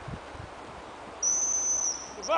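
Gundog training whistle blown in one long, steady, high-pitched blast that starts a little past halfway through.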